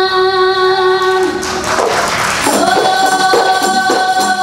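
Female qasidah vocal group singing a long held note in unison, then a rushing swell of tambourine jingles about halfway through. After that the hand tambourines play an even beat under the voices as the melody moves on.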